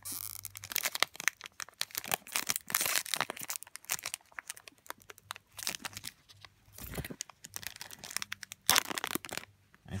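Foil Pokémon booster pack wrapper being torn open and crinkled by hand: a dense run of sharp crackles and rips, loudest near the end.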